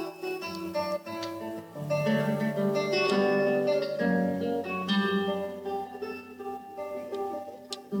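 Solo guitar played live: plucked single notes and chords left to ring, louder early and softer in the second half.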